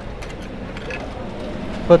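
Coins clinking as they are fed by hand into a vending machine's coin slot and drop inside: several light, separate clinks.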